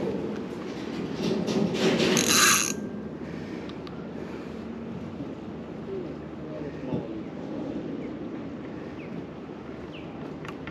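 Spinning reel clicking and whirring while under load from a large hooked fish, loudest for a second or two about a second in, then fainter and steady.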